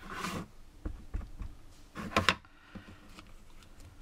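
Clear acrylic stamp block handled and set down on a craft mat: a short rustle, a few light knocks, and a sharper clack about two seconds in.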